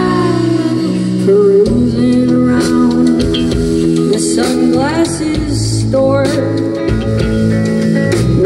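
Live indie rock band playing, with electric guitar and bass guitar to the fore over drums and cymbals.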